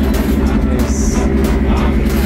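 A steady, loud low mechanical hum with several fixed low pitches, with faint background voices.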